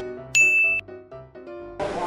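Editing sound effect for a pop-up caption: a bright, high ding about a third of a second in, over a short jingle of quick notes that stops near the end.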